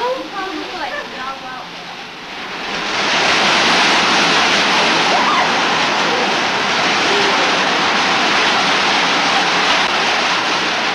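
Loud, steady din of power looms running together in a mill weaving shed. It swells up about two and a half seconds in, after a few voices, and holds steady from there on.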